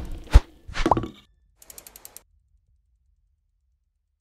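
Animated logo outro sound effects: a sharp hit, a short rising swoosh about a second in, then a quick run of faint ticks, and the sound stops about two seconds in.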